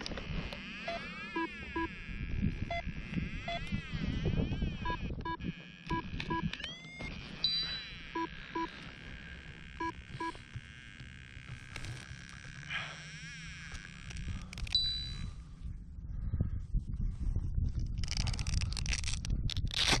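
Wind buffeting the microphone and handling noise from a paragliding harness being worked by hand, with pairs of short electronic beeps repeating every second or two. The wind gusts louder near the end.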